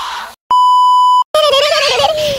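A single flat electronic beep, about three-quarters of a second long, edited in with dead silence just before and after it.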